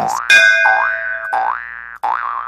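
Cartoon 'boing' sound effect: a springy pitch glide that rises three times, about half a second apart, over a ringing tone that fades away.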